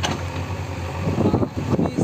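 A man speaking outdoors over a steady low rumble. There is a short pause in his speech in the first second, and he starts talking again about a second in.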